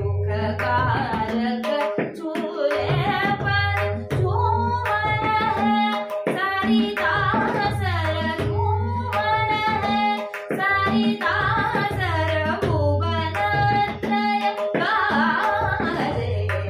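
A woman sings a Marathi natya geet in Raag Todi, her voice gliding through long, wordless runs, with tabla accompaniment in Ektal. The bass drum's deep strokes recur every second or so under sharper strokes on the treble drum.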